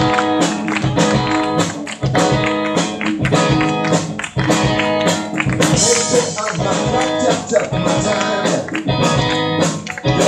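Live band of electric guitar, electric bass and drum kit playing a song with a steady beat.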